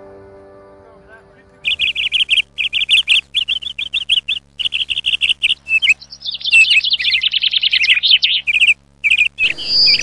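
Soft music fades out, and from about two seconds in a songbird sings loud, rapid chirping trills in quick repeated runs, with short breaks between phrases.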